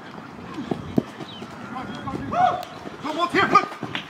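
Several people's voices shouting and calling out across an open field, loudest in the second half, with a couple of short knocks about a second in.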